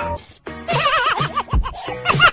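A horse-whinny sound effect: a wavering, quavering call starting about half a second in and lasting around a second, laid over comic background music whose steady beat comes in near the end.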